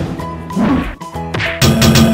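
Cartoon-style hit sound effects over background music, with the music getting louder about one and a half seconds in.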